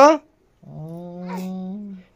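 A low, drawn-out voiced 'hmm' hum or moan held steady for over a second. It starts about half a second in and rises slightly in pitch at the end.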